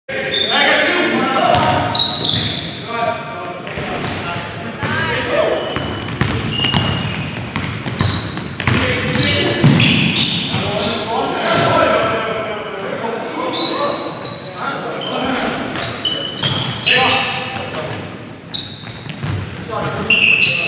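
Basketball game sounds in a large gym: the ball bouncing on the hardwood floor, sneakers squeaking in short high chirps, and players calling out indistinctly, all with the hall's echo.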